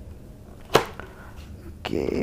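A sharp plastic snap about three-quarters of a second in, followed by a faint click: the AGV K3 SV helmet's visor mechanism being worked by hand.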